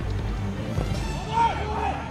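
Background music with a steady low bass, and a man's voice speaking briefly in the second half.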